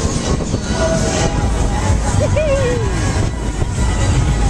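Loud, steady rushing and rumbling of a Technical Park Loop Fighter thrill ride in full swing, heard from a rider's seat. About two seconds in, a rider's voice calls out, falling in pitch.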